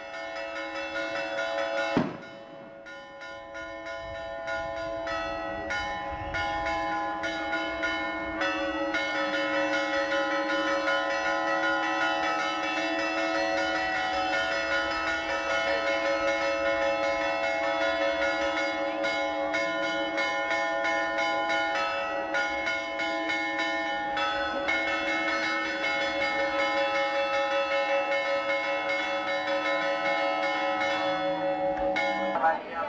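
Church bells ringing continuously, the tones of several bells overlapping in a steady clangour. A sharp click about two seconds in is followed by the ringing growing louder.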